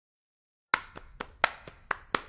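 The opening of a music track: silence, then under a second in a run of sharp, dry percussive hits, about four a second, like wood-block or clap strikes.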